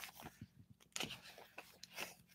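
Faint rustling of paper with a few soft clicks as a book's pages are turned.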